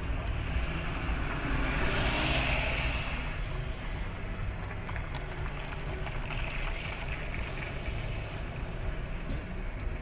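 Steady road noise and engine rumble from a vehicle on the move, with a louder rush of noise about two seconds in.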